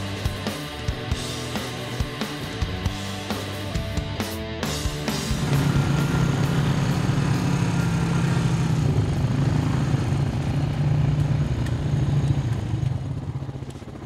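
Rock music with drums for the first few seconds, giving way about five seconds in to the steady, louder engine drone of quad bikes (ATVs) riding close by.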